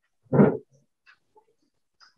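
A dog barking once, a single short loud bark about half a second in.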